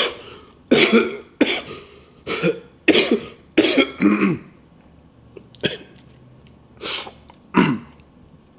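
A man's coughing fit from an illness: a run of short coughs over the first four seconds, a pause, then a few more near the end.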